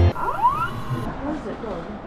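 A short cry from a person's voice rising in pitch, then a faint outdoor background with low scattered voice traces as it fades.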